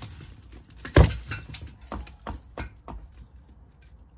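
Demolition of an old brick wall with a hammer: one heavy thud about a second in, then four lighter knocks about a third of a second apart, as bricks are struck and knocked loose.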